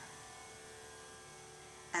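A faint, steady hum made of several held tones, with nothing else happening.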